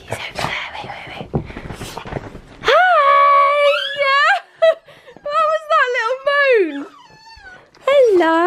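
Puppy in a wire crate whining and crying: long high-pitched whines that hold, bend up and down and sink low, starting about three seconds in after soft rustling, as it wants to be let out.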